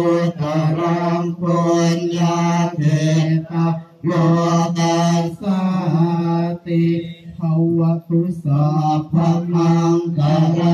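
Buddhist chanting in Pali, recited on one steady pitch in short phrases, with brief breaks about four and seven seconds in.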